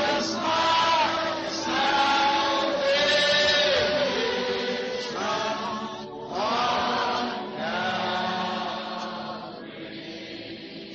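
A congregation singing an old hymn together in slow, held notes, with the singing tapering off near the end.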